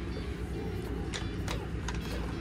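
Three light clicks and taps in the second half as squishy gel beads are handled and dropped into a plastic hand-held citrus squeezer, over a steady low hum.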